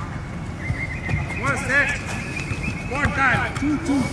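Men's voices calling out in short rising-and-falling shouts, twice, over a thin steady high tone that stops about three seconds in.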